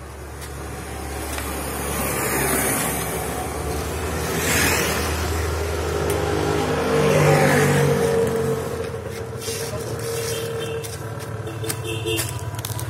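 A motor vehicle passing by: its sound swells over several seconds, peaks mid-way and fades toward the end.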